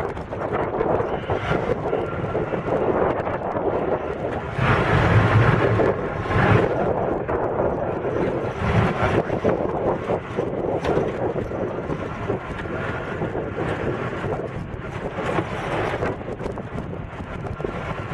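Open jeep driving over a rough dirt trail: its engine running under heavy wind buffeting on the microphone, with a louder, deeper gust of rumble about five seconds in.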